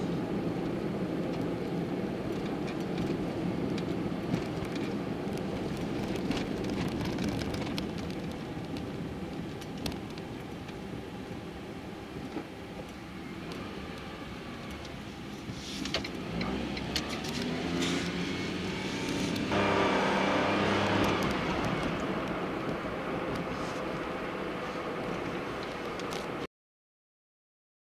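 Car cabin driving noise: engine and tyre noise heard from inside a moving car. It gets louder with a clear engine tone for a couple of seconds from about twenty seconds in, as the car pulls away or accelerates.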